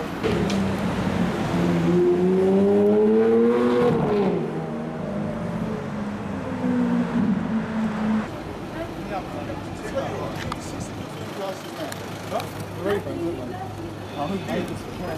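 A supercar engine accelerating, its pitch rising steadily for about four seconds, then running at a steadier, lower note that stops about eight seconds in.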